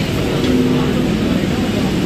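Electric multiple-unit local train running slowly past the platform, a steady electric hum setting in about half a second in, over the hiss of heavy rain.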